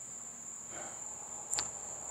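Crickets chirring in a steady high-pitched drone, with a brief click about one and a half seconds in.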